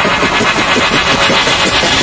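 Logo-intro sound effect: a dense rumbling build that grows brighter toward the end, leading into the reveal.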